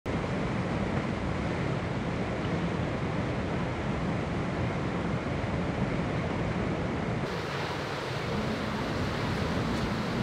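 River rapids rushing: steady whitewater noise with no breaks.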